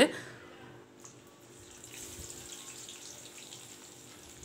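Faint, steady sizzling of hot oil in a karai with dried red chilies, rising a little about two seconds in as sliced onions go into the oil and start to fry.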